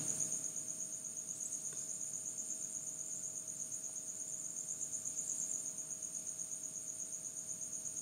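Steady high-pitched insect chirping, a fast even pulsing trill running throughout, with a faint low hum underneath.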